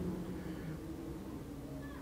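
A faint, mumbled voice over a low, steady room hum.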